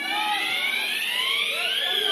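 A siren wailing, its pitch climbing steadily for about two seconds and peaking near the end before it starts to fall, over crowd noise.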